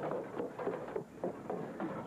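Footsteps on a barn's wooden boards: an irregular run of short taps and knocks, about four a second.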